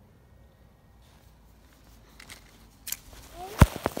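About two seconds of faint outdoor quiet, then rustling and small knocks of a handheld phone being moved through grass. Near the end comes a sharp thump of handling on the microphone, the loudest sound.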